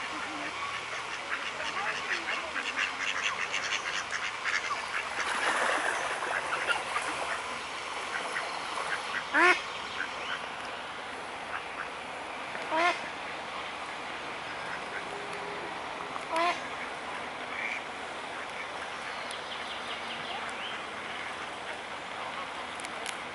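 Waterfowl calling: three short, loud honks, each rising in pitch, spaced about three and a half seconds apart. Fast, high twittering runs through the first several seconds over a steady outdoor bird background.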